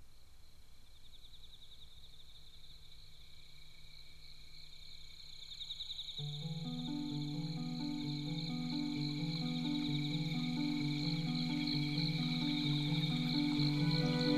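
Background music track that opens with a chirping, cricket-like trill and slowly grows louder. About six seconds in, soft sustained low chords join it in a slow, stepping pattern.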